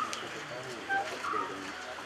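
Low voices murmuring, with a bird's short call repeating about every second and a half.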